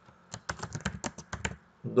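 Typing on a computer keyboard: a quick run of about a dozen keystrokes lasting a little over a second, as a short phrase is typed.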